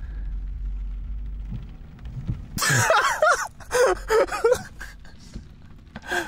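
People laughing inside a car, in one loud burst about halfway through followed by a few shorter laughs, over the car's steady low cabin rumble.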